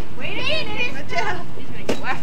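High-pitched children's and adults' voices at a party, and just before the end a single sharp whack of a stick hitting a hanging piñata.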